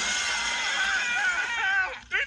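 Cartoon characters screaming together, their wavering cries over a loud, steady rush of water that starts suddenly just before and fades near the end. Heard through a TV's speaker.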